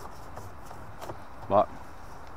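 Low, steady background noise with no distinct sound, then a single spoken word about one and a half seconds in.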